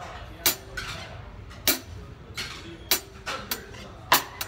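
Drumsticks lightly tapping the drum kit: about six sharp, irregularly spaced clicks in four seconds.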